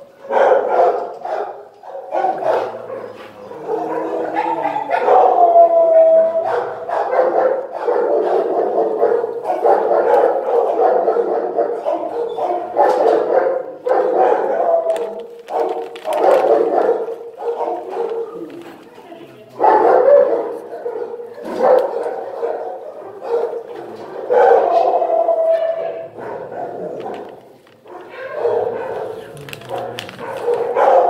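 Many shelter dogs barking at once in a kennel block, a dense, continuous din, with a few drawn-out higher calls rising above it.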